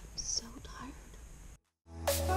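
A person whispering faintly, with a short hiss of breath in the first half-second. The sound then cuts off abruptly to dead silence shortly before the end.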